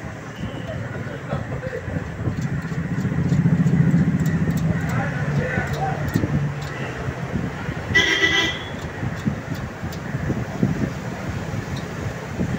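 Road traffic: a motor vehicle's engine rumble swells and fades, loudest about three to four seconds in, and a vehicle horn toots once, briefly, about eight seconds in.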